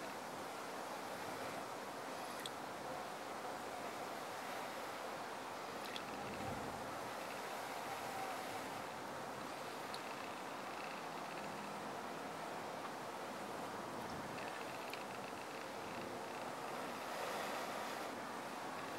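A person blowing steadily and softly into a tinder bundle around a smouldering friction-fire coal, coaxing the ember toward flame.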